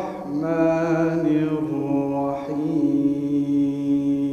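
A man chanting Qur'an recitation (tajwid) into a microphone, a solo melodic voice with gliding phrases that settles into one long held note about halfway through.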